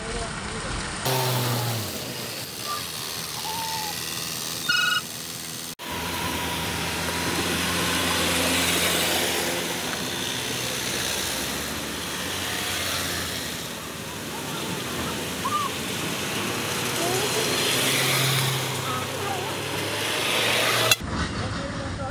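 Motorcycle ride on a rough, muddy road: the engine runs under heavy wind and road noise as trucks pass close by, with a short loud beep about five seconds in.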